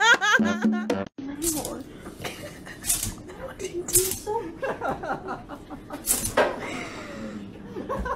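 Music cuts off about a second in; then a dog hiccups, four short sharp hics a second or two apart, while people laugh.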